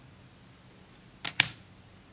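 Playing cards being handled on a wooden table: two quick sharp clicks a little over a second in, the second much louder, as a card is snapped or set down.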